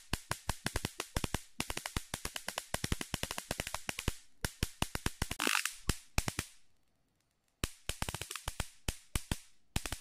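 High-voltage sparks from a voltage multiplier's output wire, snapping in a rapid crackling train of about ten a second. They die away around the middle, stop for about a second, then start again.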